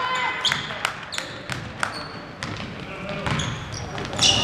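Basketball dribbled on a hardwood gym floor: sharp bounces at an uneven pace, roughly two a second, with short high sneaker squeaks in between.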